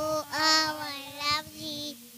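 Young children singing, with drawn-out notes and two or more voices overlapping.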